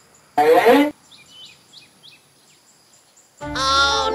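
A brief voice-like sound rising in pitch about half a second in. Then faint bird chirps, and about three and a half seconds in a loud comic musical sound effect starts.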